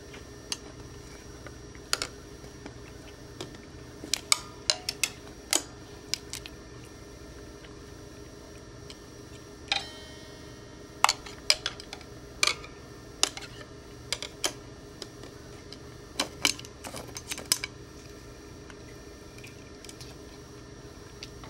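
Scattered light clicks and taps, some in quick clusters, as a cat paws at and grabs a wooden conductor's baton.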